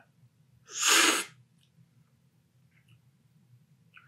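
A single loud, hissy slurp, about half a second long and about a second in: coffee sucked hard off a cupping spoon, the forceful aspirating slurp used in coffee cupping to spray the brew across the palate.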